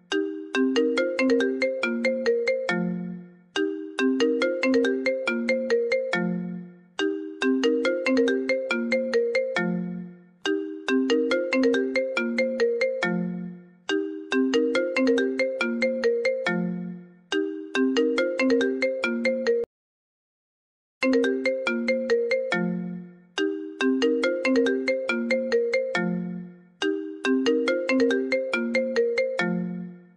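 Smartphone ringtone for an incoming WhatsApp call: a short tune of quick notes repeating about every three and a half seconds, breaking off for about a second a little past the middle.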